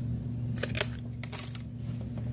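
Handling of a carded plastic blister pack: a few short clicks and a light rustle as it is moved and set down, over a steady low hum.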